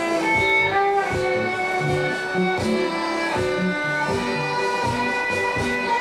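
Violin bowed live on stage, playing a melody of sustained notes that move up and down over a band accompaniment of plucked strings, a bass line and drums.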